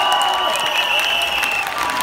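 A large audience applauding, dense clapping with a high steady tone held over it that cuts out near the end.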